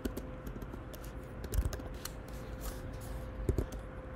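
Typing on a computer keyboard: a run of irregular key clicks, with a couple of heavier key strokes about one and a half and three and a half seconds in.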